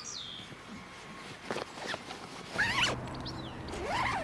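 The zip of a Head Speed tennis racquet bag being pulled in a few short runs, the longest and loudest about three seconds in.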